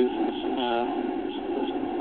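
A man's voice over a phone line: one short hesitation sound a little over half a second in, over steady noise on the line.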